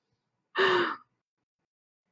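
A woman's single breathy sigh, about half a second long, about half a second in.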